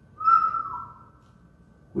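A person whistling one short note that drops in pitch partway through.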